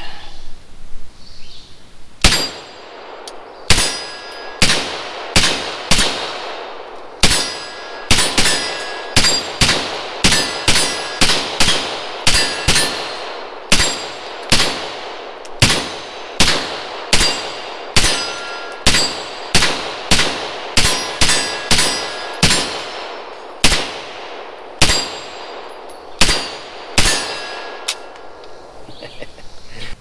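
Suppressed AR-style .22 rifle shots, each answered by the ring of a struck steel target. There are about thirty of them in uneven strings, roughly one a second, and each hit leaves a long high-pitched ringing tail.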